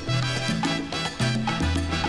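Salsa-style Afro-Cuban dance music played from a vinyl record, instrumental with no singing here. A bass line moves to a new note about every half second under dense percussion and instruments.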